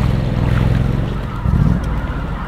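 Water sloshing and swishing around chest waders as a person wades through flooded marsh, over a steady low rumble, with a brief heavier surge about one and a half seconds in.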